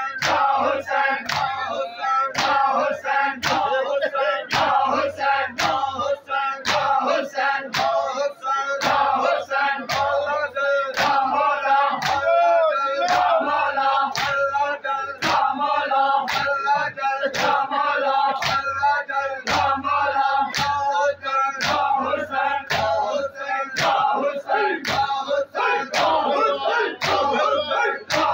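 Men's voices chanting a noha, a Shia mourning lament, over a steady, even beat of open hands striking bare chests in unison (matam).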